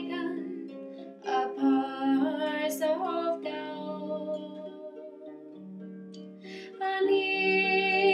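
Lever harp being plucked in a slow folk-ballad accompaniment, its notes ringing and held. A woman's singing voice comes in for a phrase about a second in and again near the end.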